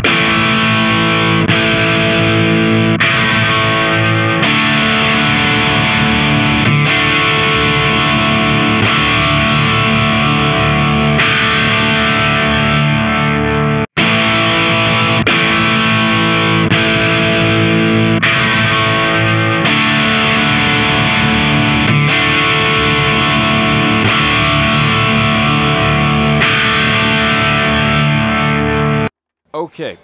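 Electric guitar played with overdrive through a miked Marshall head and cabinet, its humbucker fitted with a P90-style ceramic 8 magnet. A riff of ringing chords is played with a brief break about halfway through, and the playing stops shortly before the end.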